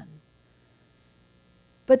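Near silence in a pause between sentences, with only a faint steady hum. A woman's voice trails off at the start and comes back on one word near the end.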